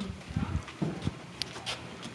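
Brisk footsteps on a carpeted hallway floor: an uneven series of dull thuds, with a sharper click or two among them.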